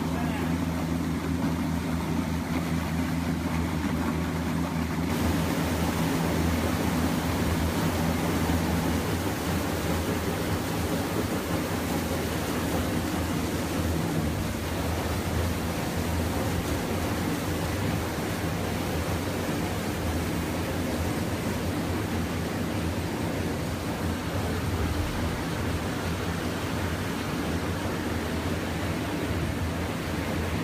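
Plastic film pre-washer running: a steady machine hum with rushing, splashing water in its washing tank. About five seconds in, the water noise suddenly gets fuller and brighter.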